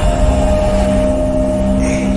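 Cinematic logo-intro sound design: a loud, deep rumble under a few held synth tones, with bright glittering sparkles coming in near the end.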